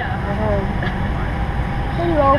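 Airliner cabin noise: the steady low drone of the engines and air, with a brief faint voice about half a second in.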